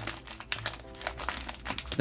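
Clear cellophane card-pack wrapper crinkling in many small, irregular crackles as hands peel it open, with faint music underneath.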